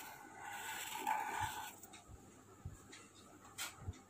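A pen scratching on paper as it draws a circle around a written word, a scratchy stroke lasting about a second and a half, followed by a couple of light clicks near the end.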